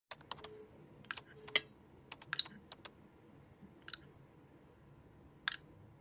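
A spoon clinking against a glass dressing jug and a china plate while yogurt dressing is spooned over a salad: about a dozen sharp, irregular taps, two of them with a brief ringing note.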